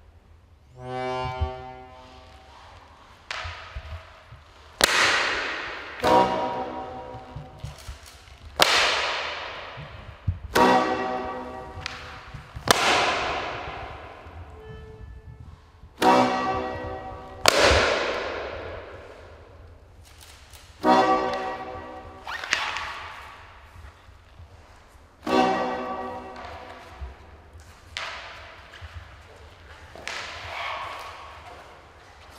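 Amplified experimental noise performance: a series of about a dozen sudden, loud hits, one every one to three seconds, each ringing out with a pitched tail that dies away over a second or two.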